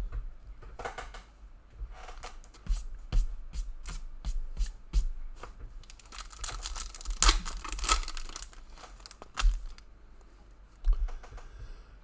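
A trading card pack's wrapper being torn open and crinkled, loudest in a burst of tearing about seven seconds in, with small clicks and taps of cards being handled around it.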